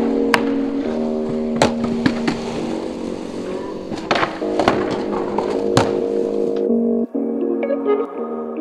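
Skateboard wheels rolling on concrete under background music, with about six sharp cracks of the board popping, hitting the ledge and landing. The skateboard noise stops about two-thirds of the way through, leaving only the music.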